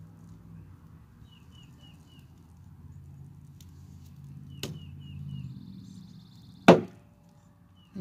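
A low steady rumble with a small bird's four quick high chirps twice, and one sharp crack about seven seconds in, the loudest sound, beside a wood fire burning in a steel fire pit.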